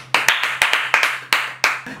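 Hands clapping: a quick, slightly uneven run of sharp claps, about four a second.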